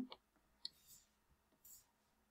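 Near silence with a few faint, brief clicks and a soft hiss near the end.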